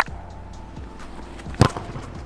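Soft background music with one sharp thud about one and a half seconds in: a football being struck for a shot at goal.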